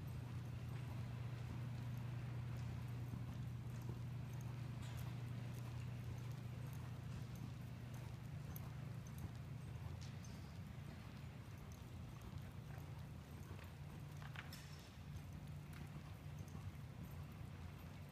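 Hoofbeats of a ridden horse trotting on soft dirt arena footing, over a steady low hum.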